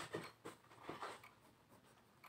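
A pen scratching on notebook paper in a few short, faint strokes as a word is handwritten. The strokes die away in the second half.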